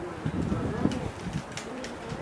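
A bird calling with short, low calls that curve up and down, over faint background voices, with a few light clicks scattered through.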